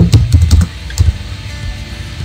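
Keystrokes on a computer keyboard, a few scattered irregular clicks, over background music with a steady low bass.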